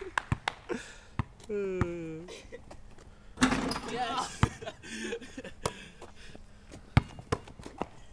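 A basketball bouncing on concrete: a string of short, irregular thuds as it is dribbled, with one louder, sharper knock about seven seconds in.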